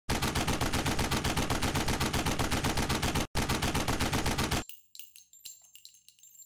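Sound-effect burst of automatic gunfire, about ten shots a second, with one short break about three seconds in, stopping suddenly near five seconds. Faint scattered metallic clinks follow.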